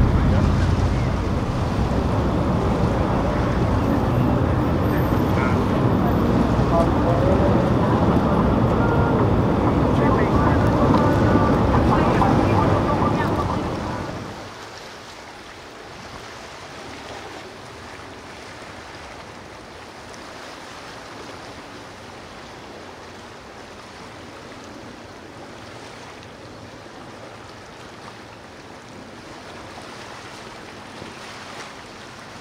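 A sportfishing boat running through inlet surf: engine noise mixed with rushing water and wind on the microphone. About 14 seconds in, the sound drops sharply to a quieter, steady wash of wind and water.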